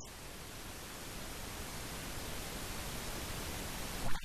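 Steady, even static hiss with no speech in it, beginning and ending abruptly as if spliced into the recording.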